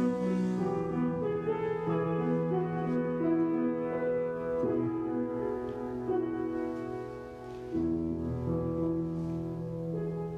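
Grand piano playing slow, held chords, the introduction to a congregational hymn. The chords change about five seconds in and again near eight seconds.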